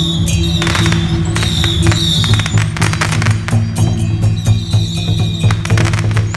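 A string of firecrackers crackling in rapid clusters of sharp pops, over continuous procession music with steady low sustained notes.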